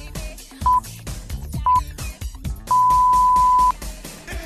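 Workout interval timer counting down over background music: two short beeps a second apart, then one long beep of about a second, marking the change between 20-second work and 10-second rest intervals.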